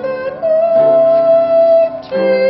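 Mixed choir of men and women singing a sustained chord. About half a second in the top voice steps up to a higher held note while the lower parts shift beneath it, and the chord breaks off near the end.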